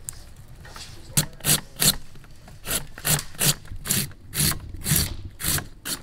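Radish being shredded on a hand grater: a run of rasping strokes, about two a second, beginning about a second in.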